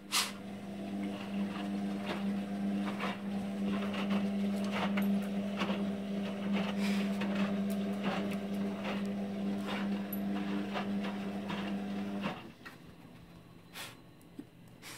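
Indesit IWD71451 front-loading washing machine running early in a Cottons 60 cycle: a steady hum with scattered clicks and knocks, a sharp click at the start, and the hum cutting off suddenly about twelve seconds in.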